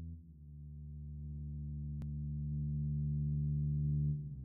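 Sustained low musical drone of steady held tones, changing pitch just after the start and slowly swelling louder: the ambient intro of a song.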